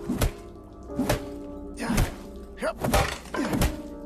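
Film fight sound effects: a run of heavy punch and body-blow impacts, about seven in four seconds, coming faster toward the end, over a background music score with low held tones.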